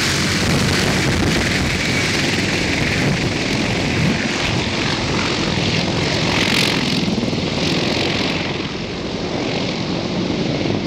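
CH-53-type heavy-lift military helicopter's rotors and turbine engines running loud as it flies away low after lifting off, getting slightly quieter near the end.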